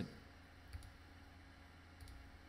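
A single faint computer mouse click about three-quarters of a second in, over a low steady hum.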